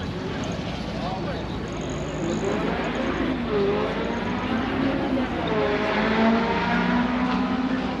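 Outdoor crowd ambience: people talking nearby over a steady background din of a busy lot, with no single event standing out.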